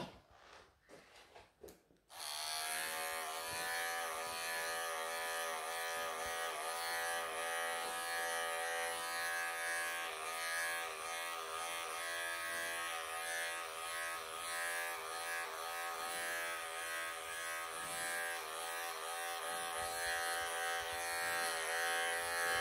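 Wahl cordless electric pet clipper switched on about two seconds in, then running with a steady buzz, its level swelling and dipping a little as the blade works through matted belly fur on a longhaired cat.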